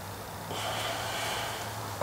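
A person's breathy exhale, starting about half a second in and lasting about a second, over a steady low hum.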